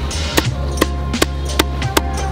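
Meat cleaver chopping raw pork skin on a wooden stump chopping block: about five sharp, even strokes a little under half a second apart. Background music plays underneath.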